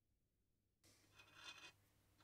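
Near silence: a moment of dead silence, then faint room tone with one soft, brief sound about a second and a half in.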